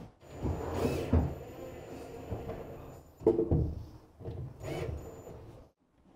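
Handling sounds of a laminated cupboard door and its metal concealed hinges: a few dull knocks and rubbing in three short bouts with quiet gaps between.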